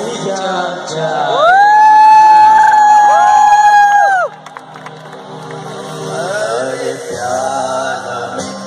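A college band playing live with male singing and a cheering crowd; a loud, high note slides up, is held for about three seconds and then cuts off suddenly, leaving quieter music.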